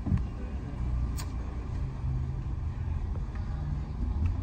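Steady low rumble of a car heard from inside the cabin as it moves slowly, with a faint click about a second in.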